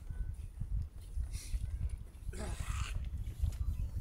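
A short animal call a little over two seconds in, lasting under a second, heard over a constant low rumble.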